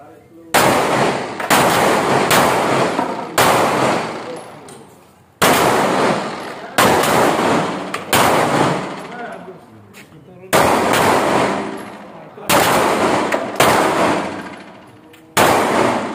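Handguns firing single shots at an irregular pace, about a dozen shots, each followed by a long fading echo.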